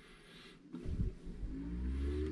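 Fisher & Paykel DishDrawer dishwasher's drain pump starting after the wash cycle is cancelled. A low hum builds from about a second in, and a whine rising in pitch joins it near the end.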